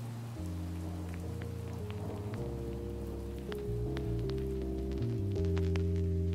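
Soft background music of sustained low chords that shift every second or so, overlaid with light, rain-like dripping ticks that grow more frequent toward the end.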